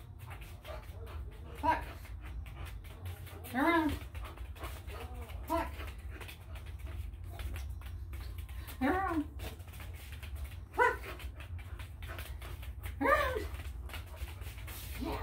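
A Shar-Pei giving short whining yips, six in all, about one every two seconds, over a steady low hum.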